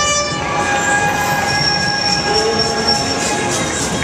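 Amphibious duck tour vehicle passing on the street, giving off several long, steady high-pitched tones at once for about three seconds, over a bed of street and crowd noise.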